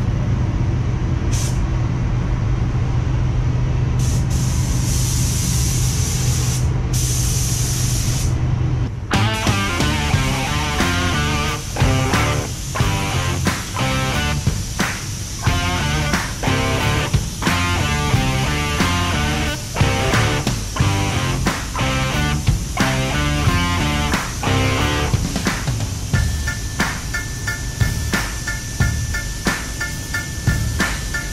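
Spray-gun air hissing in short bursts over a steady low hum for the first nine seconds or so. Background music with a steady beat then takes over for the rest.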